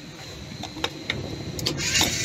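Steady low rumble from a running rooftop Greenheck make-up air unit with a faint high whine, and a few light clicks in the second half. A loud hiss starts near the end.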